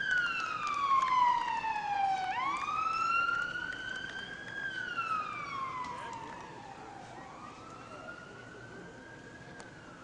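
An emergency-vehicle siren in a slow wail, its pitch falling and rising again about every four to five seconds, fading away over the second half.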